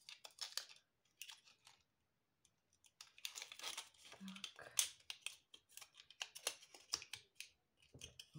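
Stiff cut pieces of plastic-bottle (PET) petals crackling and clicking as they are handled and fitted together on a wire. There is a brief lull about a second in, then denser crinkling from about three seconds on.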